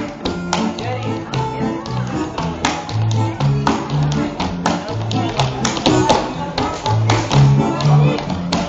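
Live electronic-keyboard dance music with a bouncing bass line, over frequent sharp percussive hits from a dancer stamping and slapping on a wooden floor.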